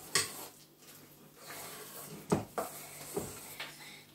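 A spoon knocking and scraping against a metal mixing bowl as thick cake batter is stirred, in a few short knocks.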